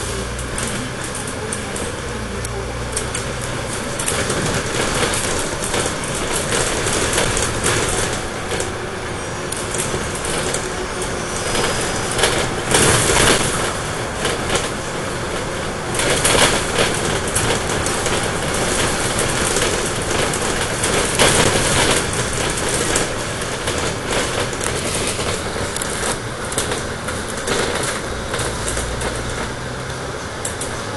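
Inside a Dennis Trident 12m double-decker bus on the move: engine drone, road noise and rattling of the body, steady throughout with a few louder spells.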